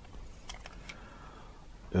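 Faint handling noise: a few light clicks and rustles in the first second as a cordless screwdriver is picked up from the bench, then only a low background hiss.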